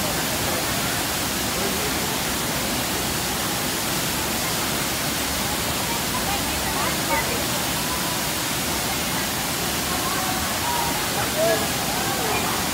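Looking Glass Falls, a waterfall plunging into a rock pool, giving a steady, even rush of falling water. Faint voices of people in the pool come through over it briefly about halfway and again near the end.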